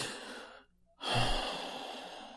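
A man sighing audibly into the microphone: one breath trailing off in the first half second, then a second, longer breathy sigh starting about a second in.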